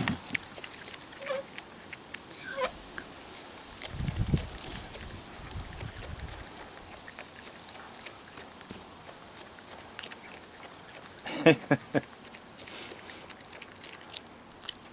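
A raccoon chewing a piece of hot dog close to the microphone: soft, scattered clicks and smacks of its jaws. A low rumble comes in about four seconds in and fades, and a short voice-like sound comes near the end.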